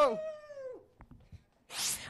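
The tail of a group of men's long shouted "Halo!", the voices gliding down in pitch and dying away within the first second. Then near quiet with a few faint clicks, and a brief burst of noise just before the end.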